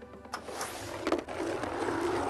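Steady rolling, rattling noise of the next bingo ball being drawn, with a couple of light clicks, starting about a third of a second in, over a faint music bed.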